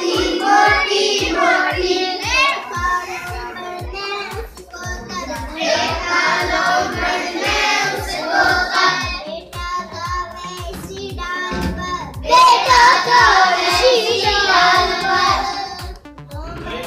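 A girl's voice singing a Hindi poem in a chanting tune, in phrases with short breaks, over a steady low beat.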